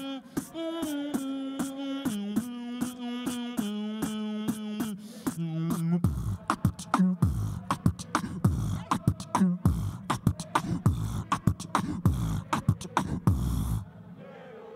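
Live human beatboxing: a hummed melody of held notes stepping in pitch over quick, regular clicks. From about six seconds in it turns into a heavy kick-drum and falling-bass beat with sharp snare clicks, which stops abruptly at the end.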